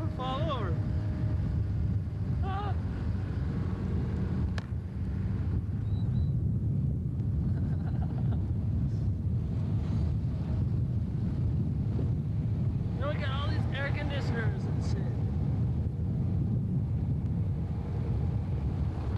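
A vehicle driving slowly, heard as a steady low rumble with wind buffeting the microphone.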